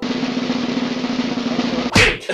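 Snare drum roll sound effect, ending in a single sharp hit near the end.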